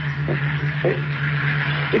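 Aeroplane engines droning steadily as planes take off from a nearby airfield, a sound effect in a radio comedy, with a low steady hum under a rushing noise.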